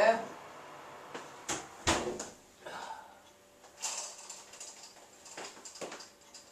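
Oven door and shelf being handled as a cake tin goes into the oven: a sharp knock about two seconds in, a short scrape soon after, and a few lighter clicks and knocks.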